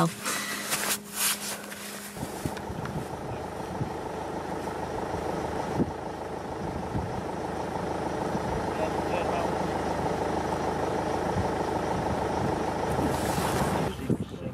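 Steady engine drone that sets in about two seconds in, after a few knocks and rustles.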